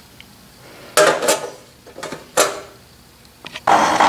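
A few light metallic knocks and rattles from a thin sheet-aluminium belt guard being handled, about a second in and again around two and a half seconds. Near the end a Rhodes 7-inch metal shaper starts sounding, running steadily with its mechanism clattering.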